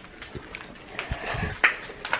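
Footsteps on a floor littered with broken tiles and debris: a few scattered scuffs and thumps, the sharpest click about a second and a half in.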